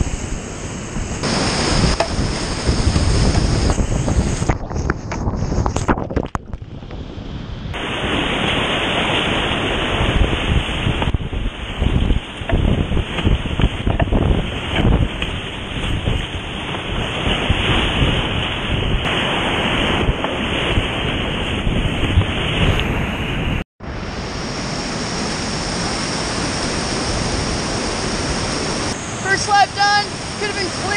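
Whitewater rapids rushing around a kayak, picked up close on a camera riding with the kayaker, with paddle splashes through the steady roar of the water. The sound goes duller for a long middle stretch and breaks off for an instant about two thirds of the way in.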